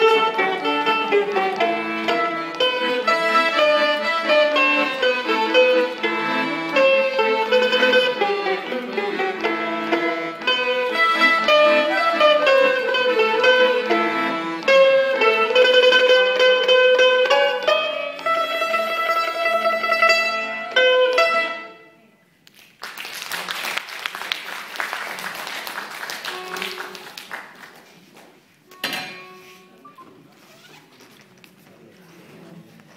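Small ensemble of erhu-type bowed fiddles, a plucked lute, violin and accordion playing the closing bars of a melody and ending on a long held note and final chord a little over two-thirds of the way in. Several seconds of audience clapping follow, then a single knock near the end.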